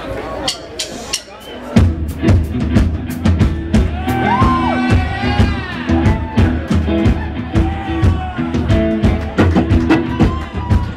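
A live rock band of electric guitar, bass, keyboards and drum kit comes in about two seconds in, after scattered crowd chatter and clicks. A lead line bends up and down in pitch over a steady drum beat and bass.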